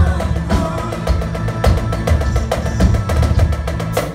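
Live band break with the drum kit to the fore, struck hard with fast rolls on the drums. It cuts off suddenly at the end.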